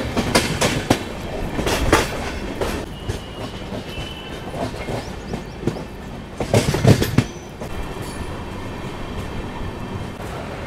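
Passenger train's coach wheels running over the rails, clacking in quick clusters of sharp knocks over rail joints and points, once at the start and again about seven seconds in. There is a faint high squeal in between as it rolls into a station.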